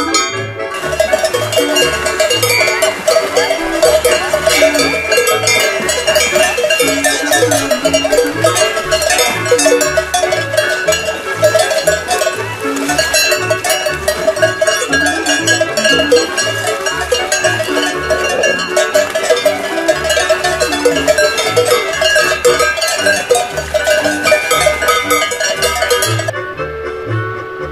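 Cowbells ringing densely and continuously, starting about a second in, over Swiss folk music with a steady alternating oom-pah bass.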